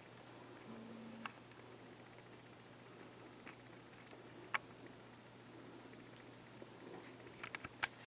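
Near-silent room tone with a faint steady hum and a few faint small clicks, the sharpest about four and a half seconds in, and a quick run of tiny clicks near the end.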